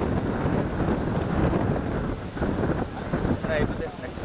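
Wind blowing hard on the microphone, with sea surf breaking behind it.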